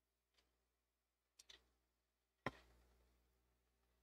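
Near silence, broken by one short click a little past halfway and a pair of fainter ticks shortly before it.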